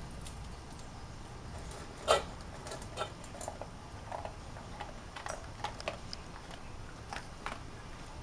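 Basset hound eating from a metal bowl: scattered crunching and clinks against the bowl, the loudest a sharp clink about two seconds in.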